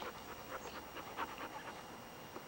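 A dog panting close to the microphone: a quick, faint series of breaths.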